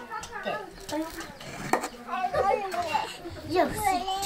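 Young children's voices talking and chattering in high voices, with one sharp click a little before the middle.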